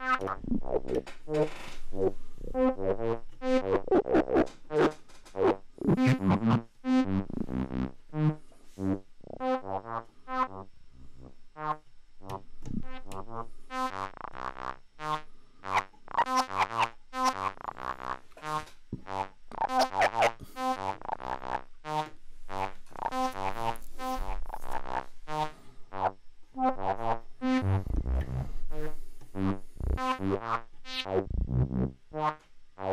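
Modular synthesizer patch playing a fast run of short notes through Steve's MS-22, a Korg MS-20-style filter, an envelope opening its gain and pushing up its resonance. The tone brightens and darkens as the filter knobs are turned.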